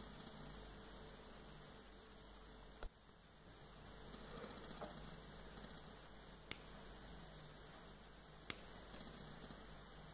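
Faint room hiss and mains hum, broken by three short sharp clicks spread across the stretch: small side cutters snipping the excess component leads off a freshly assembled PCB.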